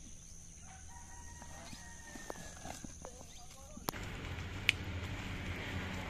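A bird's long, held call, with steady tones lasting about two seconds starting a second in. About four seconds in, a sharp click is followed by a louder, steady background noise and a second loud click.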